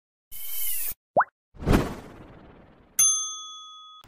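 Channel logo-intro sound effects: a short whoosh, a quick rising bloop, a second swoosh that fades, then about three seconds in a bright chime struck once that rings on and slowly fades.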